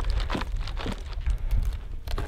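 Scattered crackling and rustling of bark, dry leaves and clothing as a man scrambles on a leaning dead tree trunk, with short irregular clicks over a steady low rumble.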